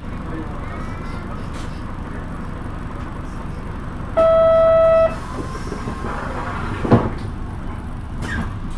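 Buses idling at a terminal, a steady engine and street noise. About halfway through, a loud horn-like tone sounds once for about a second. A sharp knock follows near the end.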